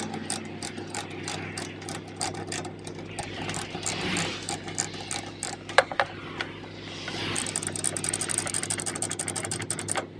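Ratchet chain binder clicking as its handle is worked to slacken a car's tie-down chain on a flatbed trailer, with a sharp clank of chain and hook just before six seconds in and faster ratcheting toward the end. A steady low hum runs underneath.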